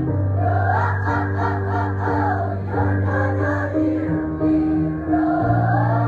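Mixed choir of women's and men's voices singing in harmony, with no instruments. The low voices hold long notes beneath moving upper parts.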